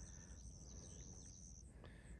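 Near silence, with a faint steady high-pitched insect call that stops about one and a half seconds in.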